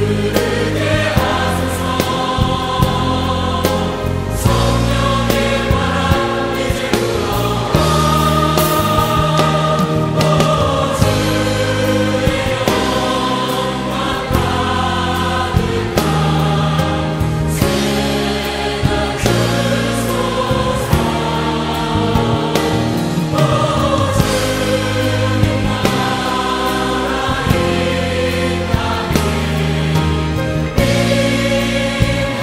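Choir singing a Korean contemporary worship song over a full band accompaniment, with steady bass notes and chords throughout.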